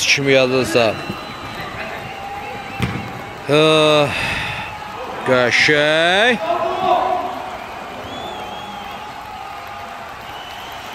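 A man's voice calling out in drawn-out shouts rather than words, three times: at the start, about three and a half seconds in, and about five seconds in, the last rising in pitch. A single sharp knock comes just before the second shout, a football being kicked.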